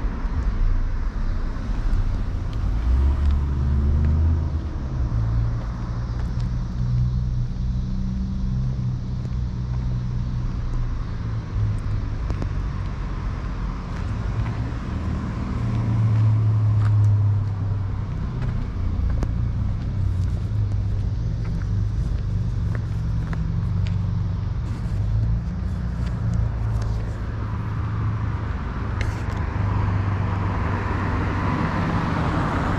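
Street traffic: a steady low rumble of car engines, swelling briefly about three seconds in and again around sixteen seconds, with faint scattered ticks.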